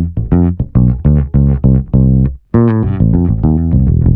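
Electric bass guitar playing a quick line of single plucked notes, about four a second, with a brief break about halfway through.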